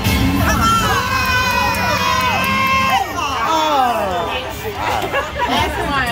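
Wheel of Fortune Triple Double Emeralds slot machine spinning, with its electronic tones held steady and stepping in pitch for about three seconds, then a run of falling sweeps. A group of women shouts and cheers over it.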